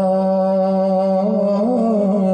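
A man singing a Punjabi naat into a microphone, holding one long steady note that breaks into a short wavering ornament in the second half.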